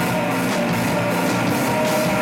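A live hardcore punk band playing loud, with distorted electric guitars over a drum kit that keeps a steady beat.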